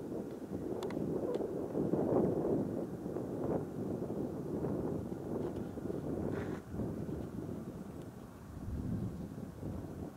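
Wind blowing across the camera microphone, a rushing rumble that rises and falls in gusts.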